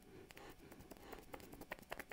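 Faint sniffing at the nozzle of a plastic e-liquid bottle held under the nose, with scattered small clicks and ticks.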